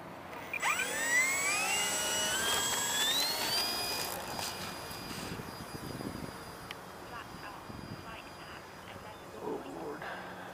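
Electric motor and propeller of a Durafly T-28 V2 RC model plane throttling up for takeoff: a whine that climbs steeply in pitch for about three seconds, then holds steady at full throttle and fades as the plane flies away.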